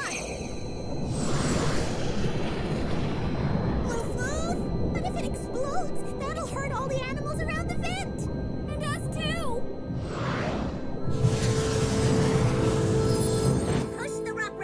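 Cartoon sound effect of a rumbling hydrothermal vent under background music, with a burst of hissing about a second in and again near the end. Short gliding pitched vocal sounds come in the middle.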